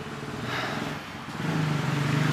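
A motor vehicle's engine running close by, growing louder through the stretch.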